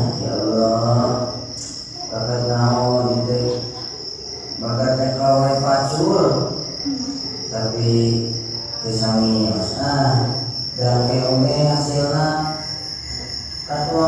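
A man's voice amplified through a PA system, intoned in held phrases about two seconds long with short pauses between them, like a dramatic recitation or chant. A steady high-pitched thin tone runs underneath.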